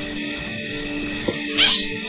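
A soft, steady chord of soundtrack music, and near the end one short, high-pitched cry from a newborn baboon.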